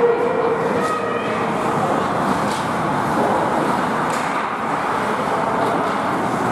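Steady ice-rink game noise: skates scraping the ice and distant voices across the arena, with a few faint clicks.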